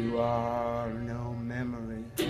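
A man's voice holding one long wordless sung note, wavering near the end, with no guitar strumming under it.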